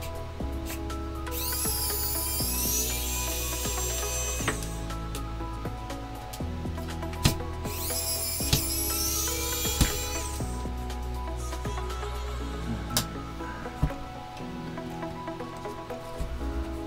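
Small electric precision screwdriver whining in two runs of about three seconds each, its pitch rising as it spins up and then holding, as it backs screws out of a keyboard PCB. A few light clicks fall between the runs.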